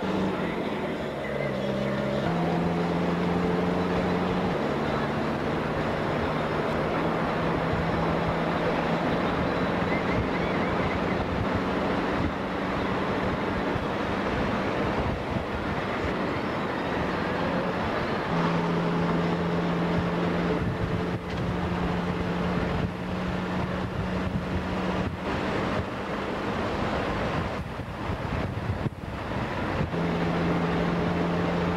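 Road and wind noise from inside a moving vehicle driving on fresh asphalt, with a steady low hum that shifts to a different pitch a few times.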